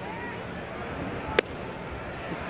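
A pitched baseball popping into the catcher's leather mitt: a single sharp crack about a second and a half in, over a steady ballpark crowd murmur.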